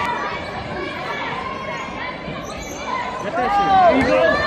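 Spectators chattering in an echoing school gym during a basketball game, with a basketball bouncing on the court. A single voice calls out loudly near the end.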